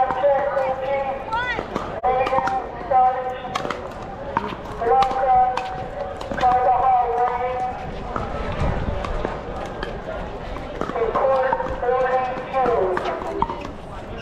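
Pickleball rally: intermittent sharp pops of paddles striking a plastic ball, over voices talking throughout.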